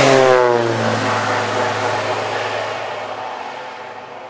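Crop-dusting airplane's engine passing close by, loud at first, its pitch sliding down and its sound fading as it flies away.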